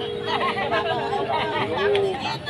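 Sli folk singing: a voice holds one long steady note that ends near the end, with people chatting over it.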